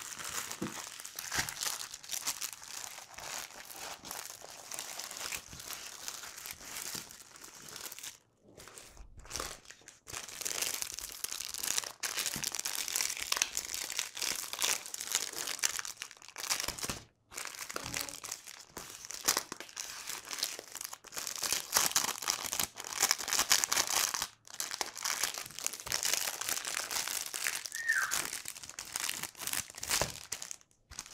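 Clear plastic packaging crinkling as it is handled and unwrapped from a rolled diamond painting canvas: a dense, continuous crackle with a few brief pauses.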